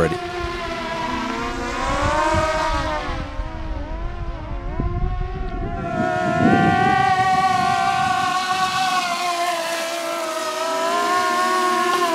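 The electric motors and propellers of a small four-motor quadrotor biplane drone whine while it flies, several pitches sliding up and down and beating against one another as the flight controller varies the motor speeds. The whine settles into a steadier tone about halfway through, and a low rumble runs under the first half.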